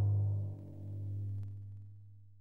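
The tail of a drum-roll music sting: a low held note that dips, swells once about a second in, and then fades away.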